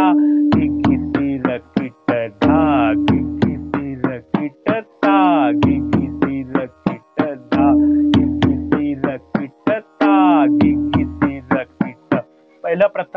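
A pakhawaj is played with both hands in the sarpat phrase "dha-ghi-ghi tirakita ta-ghi-ghi tirakita". Ringing strokes on the tuned right head are mixed with deep bass strokes on the left head, and quick tirakita flurries run between them. The phrase repeats without a gap about every two and a half seconds.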